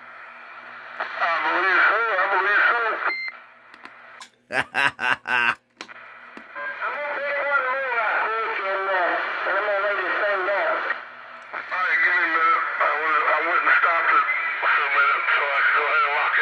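A vintage vacuum-tube CB radio receiving a voice through its speaker: muffled, narrow-band speech over a steady low hum. About three seconds in there is a short beep, and a quick run of loud crackles follows a second or so later before the voice resumes.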